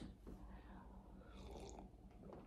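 Faint sip of coffee from a mug, a soft slurp about one and a half seconds in, over a low steady hum.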